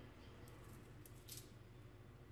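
Near silence: a faint low hum, with a few faint high clicks between about half a second and a second and a half in.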